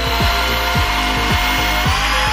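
Power drill running steadily, spinning a corn cob against a stripping blade that shaves off the kernels; the motor whine rises slightly in pitch near the end. A music beat with a kick drum about twice a second plays underneath.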